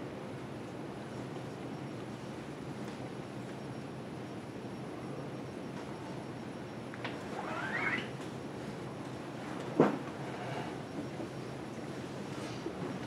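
Steady room noise with a brief squeak about seven seconds in and a single sharp knock near ten seconds, the loudest sound.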